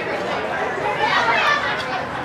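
Several people chattering at once, overlapping voices with no single clear talker.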